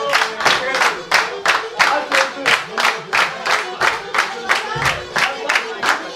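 A group of people clapping in unison in a steady, fast rhythm, about three claps a second, over a faint melody.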